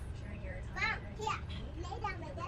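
A young child's voice: two short, high-pitched vocal sounds about a second in, over a steady low hum.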